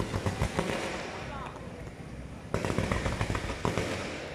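Fireworks going off in a rapid run of crackles and pops, loud through the first second, easing off, then loud again from about two and a half seconds in, as ground fountains spray sparks for a firework salute.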